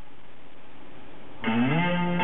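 Music from a car head unit cuts out, leaving a second and a half of faint hiss while the player switches tracks, then a guitar-led rock track starts near the end, its first notes sliding up in pitch as it comes in.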